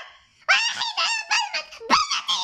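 A very high-pitched human voice squealing in a quick run of short cries that rise and fall, starting about half a second in.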